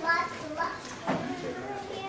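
Indistinct voices talking in the background, higher-pitched than a grown man's. There is a brief knock about a second in.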